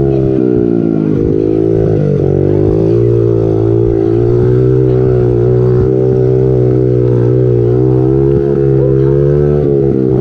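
Small four-stroke peewee dirt bike engine running at a steady, fairly constant pitch, dipping briefly about half a second and two seconds in.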